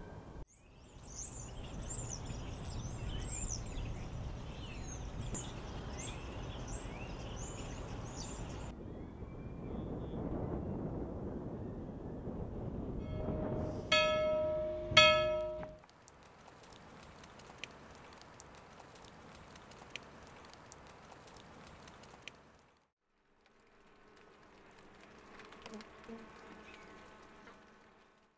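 Birds chirping over outdoor background noise, then a church bell struck twice about a second apart, the loudest sound. Near the end, a faint buzzing of honeybees at a hive entrance.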